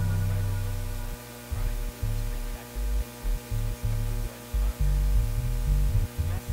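Low bass notes played on an electronic keyboard synthesizer: one held for about a second, then a run of short separate notes, over a steady electrical hum.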